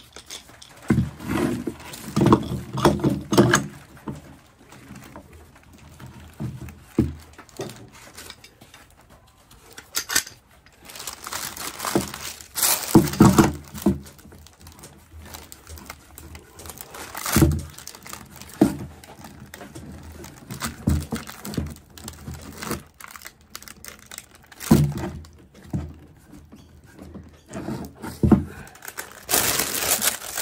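Steel F-clamps being fitted and screwed down onto a stack of wooden boards, with metal clanks, knocks on the wood and paper crinkling. The sounds come in irregular bursts separated by quieter handling.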